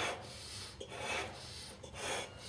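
Breathing of someone blowing up a large 90 cm latex balloon by mouth: breaths drawn in and blown into the balloon, hissing, with a louder breath about once a second.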